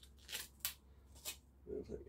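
A few faint clicks and rustles as hands handle a power plug and its cable, over a steady low hum; a man starts talking near the end.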